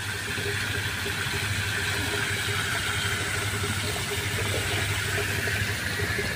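A jet of water spraying and splashing steadily onto a fish pond's surface, with a steady low motor hum from the pump beneath it.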